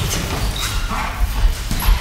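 Light boxing sparring in a ring: irregular dull thuds of feet on the ring canvas and gloves landing, with a few short, sharper sounds among them.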